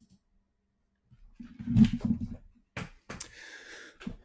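Handling noises on a tabletop: a dull bump and rustle, then two sharp clicks and a short, faint scrape.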